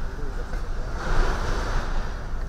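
Wind buffeting the microphone outdoors, a rushing rumble that swells about a second in, with faint voices in the background.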